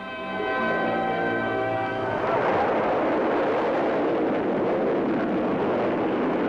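Music holding a chord. About two seconds in it gives way to a Bloodhound surface-to-air missile's booster rockets firing at launch, a loud, steady rushing noise.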